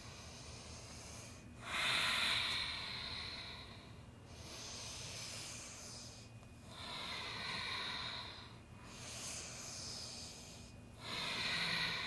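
A woman taking slow, deep breaths, audible through the nose, about five breath sounds of roughly two seconds each, alternating louder and softer as inhales and exhales.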